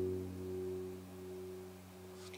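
Acoustic guitar chord ringing out and slowly fading, its low notes lingering.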